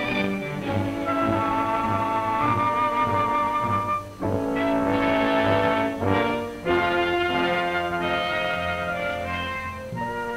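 Orchestral film score with brass prominent, playing held notes that change in steps, with brief breaks about four and six and a half seconds in.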